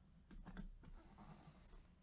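Near silence: room tone with a few faint soft clicks and rustles in the first second, as gloved hands handle a card in a rigid plastic holder.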